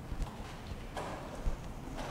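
A person's footsteps on a hard church floor, a few unhurried steps with a low thump at each, echoing in a large room.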